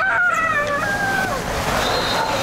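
A woman's drawn-out, high-pitched exclamation with a gliding pitch, then a steady rushing scrape as she starts down a concrete slide.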